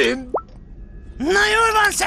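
A quick cartoon plop sound effect, a pop whose pitch rises fast, about a third of a second in. After a short lull, a character's drawn-out 'mä' call begins.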